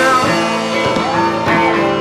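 A live rock band playing an electric guitar-driven song, with a singer's voice briefly heard over the band.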